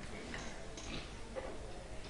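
Quiet room tone during a pause in the talk, with a few faint ticks.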